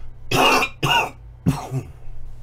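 A man coughing three times into his fist, in three short coughs about half a second apart.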